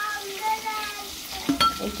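Small turmeric-coated fish frying in oil in a steel pan, with a steady low sizzle and a metal spatula clicking against the pan about one and a half seconds in.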